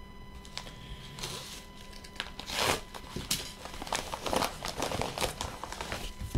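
Packaging handled: a padded mailer envelope and bubble wrap rustling and crinkling in irregular bursts. The loudest crinkle comes about two and a half seconds in, followed by a run of small sharp crackles.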